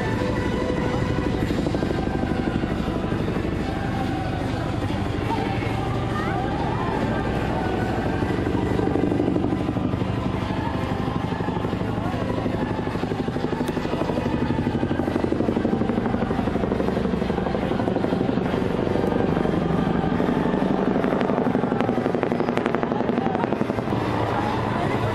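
A helicopter flying overhead, its rotor beating in a fast, even pulse, with voices and some music in the background.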